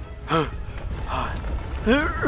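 A cartoon character's voice making short wordless gasps and strained cries, one about a third of a second in and another near the end, over a steady low rumble.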